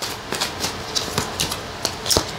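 Tarot cards being shuffled in the hands: a quick run of light card clicks and flicks.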